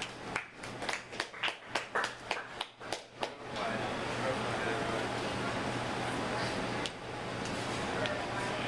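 A small audience clapping, about a dozen claps over the first three and a half seconds, then a steady murmur of room chatter.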